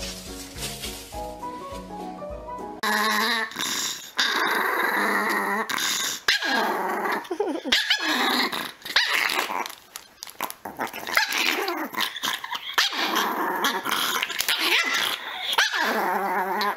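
Background music for about the first three seconds, then a Pomeranian growling and barking in quick, harsh bursts that go on to the end.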